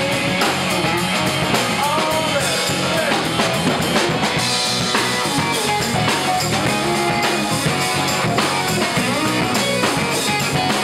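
Live rock band playing an instrumental passage: a Fender electric guitar over drum kit and bass, with a steady beat.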